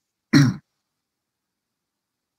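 A man clears his throat once, briefly and loudly, about a third of a second in, heard over a video-call connection.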